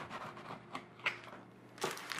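Kitchen knife cutting through a once-baked biscotti loaf on a plastic cutting board: a handful of short, crisp crunches and taps at irregular spacing, the loudest near the end.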